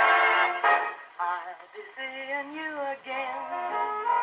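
A 1945 big-band fox-trot on a 78 rpm shellac record playing through an acoustic Victrola gramophone. A brass-led band passage ends just under a second in, then singing takes over with light backing.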